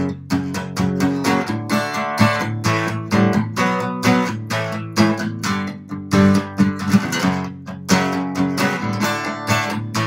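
Acoustic guitar strummed in a steady rhythm, several strokes a second, playing a chord progression of B minor, A, G, F sharp and D.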